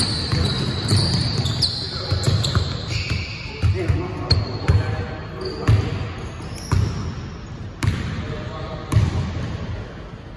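A basketball dribbling and bouncing on a hardwood gym floor, a thud about once a second, with short high sneaker squeaks and players' voices in the background.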